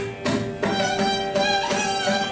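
Carnatic violin playing a melodic phrase in raga Pantuvarali over a steady drone, with occasional mridangam strokes.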